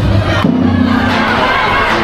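A crowd of many voices shouting and cheering at once, with music still going underneath. The dance music's beat drops out at the start.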